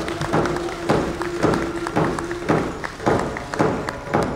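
Hide frame drums beaten in a steady beat of about two strokes a second, with a singing voice holding one long note over the first half, and applause underneath.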